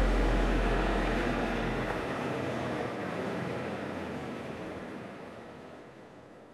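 Car road noise heard from inside the cabin: a steady rush with a low rumble. The rumble drops away about two seconds in, and the rush fades out gradually.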